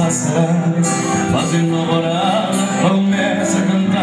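A man singing a country-style song into a microphone, accompanying himself on a strummed steel-string acoustic guitar.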